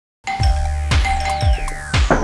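Opening music with a steady beat, about two drum beats a second over a held low note. A long falling sweep runs through the second half.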